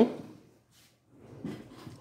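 A voice trails off at the start, then a fork faintly scrapes and rustles as it scoops pasta from a plate.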